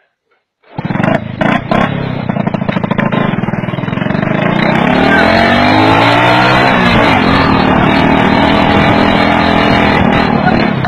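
A motor vehicle engine running loudly, starting suddenly just under a second in, its pitch rising and falling as it revs.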